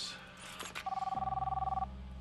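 Mobile phone ringing once: a one-second electronic ring of two steady warbling tones. A low steady drone sets in behind it and carries on after the ring stops.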